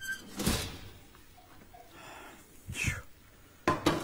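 Wall oven door shut with a thud about half a second in, followed by a softer knock near three seconds and a sharp click just before the end.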